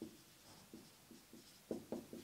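Marker pen writing on a whiteboard: a run of short scratchy strokes, faint at first and louder for a few strokes near the end.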